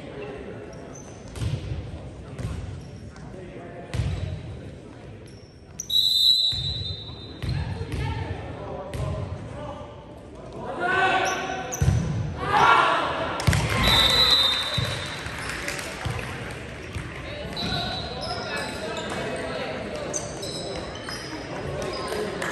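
Volleyball thudding on hands and the hardwood gym floor, each hit echoing in the large hall, with players shouting during a rally. Short high whistle blasts come about six seconds in and again around fourteen seconds.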